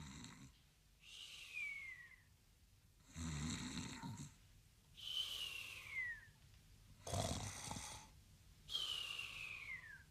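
Cartoon snoring: a low rasping snore on the in-breath, then a whistle that falls in pitch on the out-breath. The cycle repeats three times.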